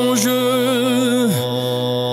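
A cappella male voice holding one long sung note over a low, steady vocal drone; about a second and a half in, the held note slides down and falls away, leaving the drone.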